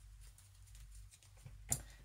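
Quiet room tone, with one short click near the end.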